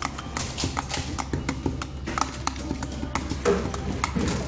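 A run of irregular light clicks and taps, several a second, over background music.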